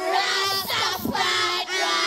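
Children singing, their voices picked up by headset microphones.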